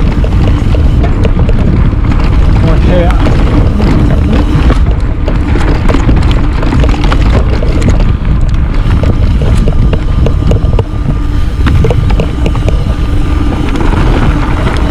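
Trek Remedy full-suspension mountain bike descending a rough dirt singletrack at speed: wind rushing over the camera microphone, with tyre noise and a constant run of clicks and rattles from the bike over the bumpy trail.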